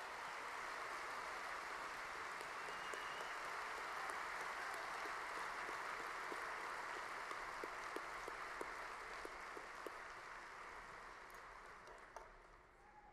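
A large audience applauding steadily, dying away over the last couple of seconds.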